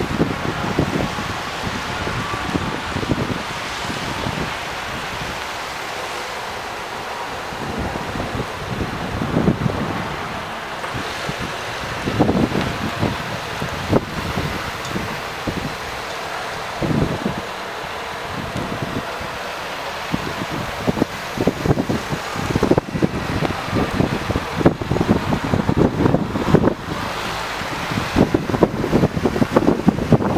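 Wind buffeting the microphone in irregular gusts, over the engines and tyres of Opel vans driving slowly past on a wet road.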